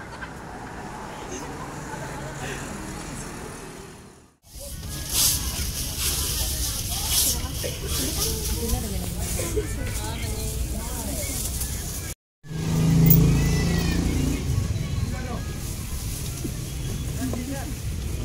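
Steady engine and road rumble inside a crowded passenger vehicle, with passengers' voices over it. The sound breaks off abruptly twice, about four and twelve seconds in.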